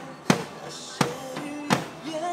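Drum kit played along to a song, with three loud, sharp strikes about 0.7 seconds apart over the song's pitched melody.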